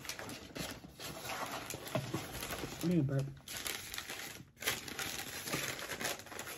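Paper food wrappers and a cardboard takeout box crinkling and rustling as they are handled. A single short word is spoken about three seconds in.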